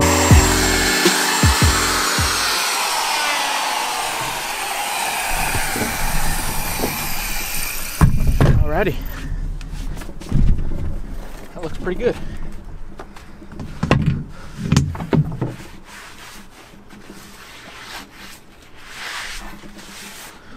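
Porter-Cable orbital sander coasting down after being switched off, its whine falling over several seconds. After that come scattered knocks and handling sounds.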